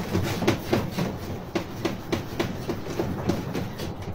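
Rapid, irregular clicking and knocking, about four or five taps a second, dying away near the end.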